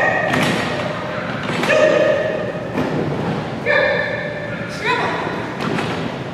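Dull thuds of a dog's paws and a handler's running feet on agility equipment and matting in a large hall, struck several times. A few drawn-out shouted calls are mixed in.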